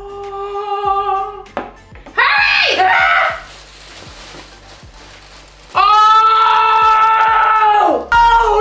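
Voices holding long, steady sung 'aah' notes, with a loud excited cry between them. The last note is the loudest and is cut off sharply at the end. Quieter background music with a steady beat runs underneath.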